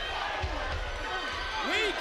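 Dull thuds of wrestlers' bodies and blows landing in a ring brawl, with men's voices shouting over them.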